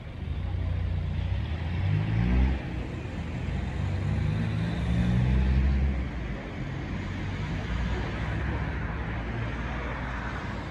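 A road vehicle's engine running nearby, a low rumble with a pitch that steps up as it pulls away, swelling about two seconds in and again around five to six seconds.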